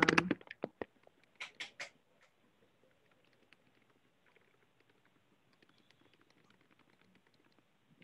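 Faint computer keyboard typing: scattered light key clicks, with a few sharper clicks about one and a half seconds in.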